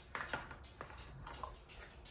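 A few faint light clicks and taps in the first second, then little more: a metal measuring spoon against a small spice container as a teaspoon of seasoning is scooped out.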